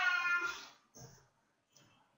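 A cat meowing once, a long, high call that fades out under a second in, followed by a few faint ticks.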